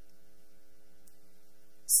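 Steady electrical hum, several even tones held without change, in a pause in the speech; a man's voice starts right at the end.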